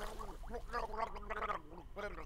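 A man's voice gargling and gurgling in short broken sounds, acted as someone held under water and struggling to breathe.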